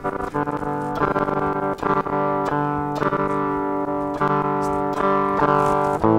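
Electric guitar playing clean chords, a new chord struck about every second and left to ring, heard through a Boss WL50 wireless unit feeding the mixer directly with a little reverb; the signal comes through without dropouts.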